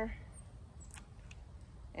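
Hand pruners snipping a small peach twig: one short, faint click about a second in, followed by a softer tick, over low outdoor background noise.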